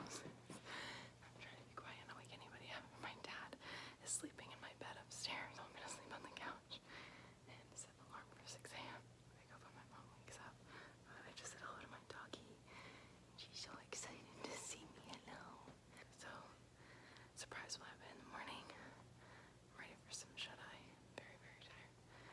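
A woman whispering quietly close to the microphone, in soft broken phrases, over a faint steady low hum.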